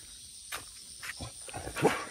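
Dogs sniffing and snuffling close up: quiet at first, with a single click about half a second in, then a few short, noisy sounds building in the second half.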